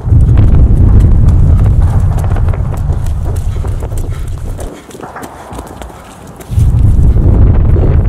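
Quick footsteps of someone moving on foot, with a loud low rumble of buffeting on the microphone. The rumble drops away for a couple of seconds past the middle, then comes back.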